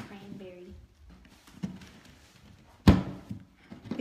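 A short knife prying at a pearl oyster's shell, with faint scraping, a small knock, and then one loud sharp crack about three seconds in.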